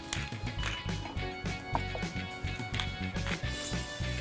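Background music: held tones over a steady, pulsing low beat.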